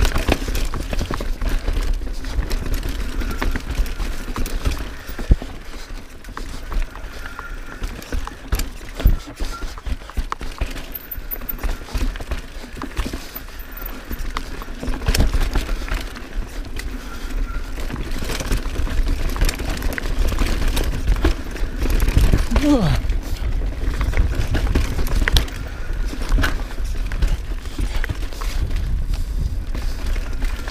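Mountain bike descending a rough dirt singletrack, heard from a bike-mounted camera: a steady rumble of tyres and wind on the microphone, with frequent sharp clacks and rattles as the bike hits roots and rocks.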